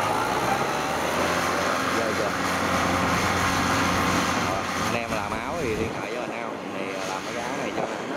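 Engine of a small tracked rice-hauling carrier running steadily as it drives through rice stubble. About five seconds in the engine fades and a voice is heard.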